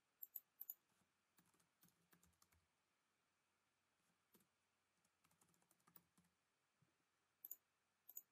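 Faint computer keyboard typing and mouse clicks, scattered short taps with a sharper pair of clicks near the end.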